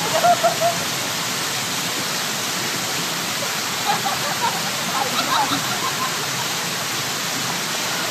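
Steady rushing and splashing of a fountain: many small water jets and wall cascades falling into a shallow pool. Faint voices come through at the start and again about four to five seconds in.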